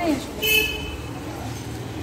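A brief, high-pitched vehicle horn toot about half a second in.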